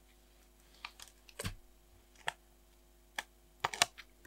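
Scattered small clicks and taps of paper, sticker and fingernails against a tiny planner's card pages as it is handled. About six separate clicks, two of them quickly together near the end.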